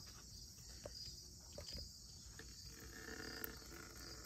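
Faint, steady, high-pitched insect chirring, with a few soft ticks.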